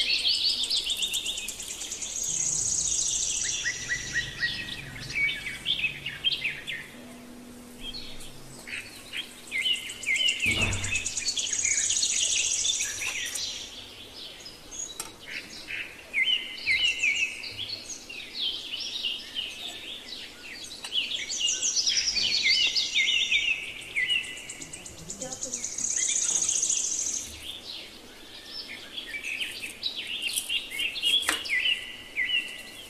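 A busy chorus of small birds chirping and trilling without a break, with one short dull knock about ten seconds in.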